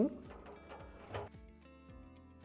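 Faint background music, with one light knock about a second in as the plastic drum paddle is handled against the stainless-steel drum of a top-loading washing machine.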